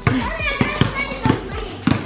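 Children shouting and talking as they play, with a run of sharp thuds from a ball bouncing on concrete, two or three a second.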